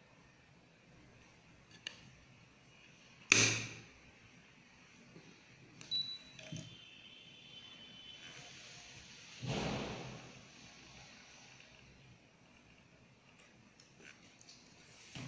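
DVP-740 mini fusion splicer running a splice cycle: a loud sharp snap as its windshield lid is closed, then a click with a short high beep and a faint high whine from the fibre-alignment motors, and a brief noisy burst of about half a second, the fusion arc welding the fibre ends.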